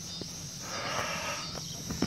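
Quiet background ambience: a faint steady hiss with a slight swell around the middle and a couple of faint clicks.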